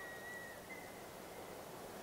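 Faint hiss of room tone through a stage microphone during a pause in speech, with a thin, faint steady high tone.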